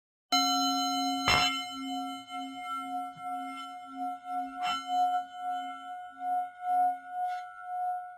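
A singing bowl ringing with a slowly pulsing, wavering tone. It is struck again about a second in and once more near the middle, and the ring slowly fades.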